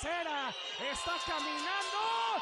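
Excited Spanish-language wrestling commentary from a lucha libre broadcast, with music underneath.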